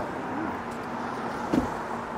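Steady background road traffic noise with a faint low hum, and a short thump about one and a half seconds in.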